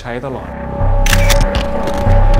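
Show-ending music comes in after a man's last words: held synth tones over a heavy bass beat, with a few bright clicks about a second in.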